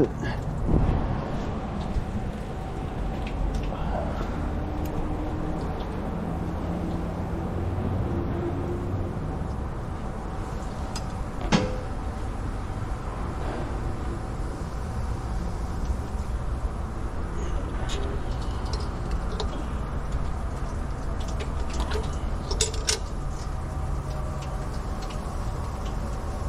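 Coolant running out of an open radiator drain as a steady noise, with a few light clicks and knocks of handling along the way.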